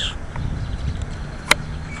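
Steady low outdoor rumble with a faint background haze, and one sharp click about one and a half seconds in.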